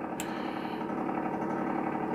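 Toaster oven's convection fan running with a steady hum, with one light click shortly after the start.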